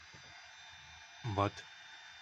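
Small CNC router spindle motor running, heard as a faint steady hiss with a thin high whine, under one short spoken word.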